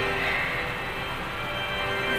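Organ music of a hymn's intro: the held chords thin out and quieten, then build again near the end.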